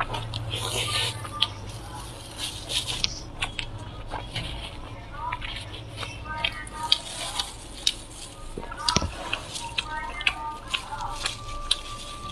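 Close-miked chewing and mouth sounds from eating a lettuce-wrapped bite of braised pork: a run of short, wet clicks and smacks at an irregular pace.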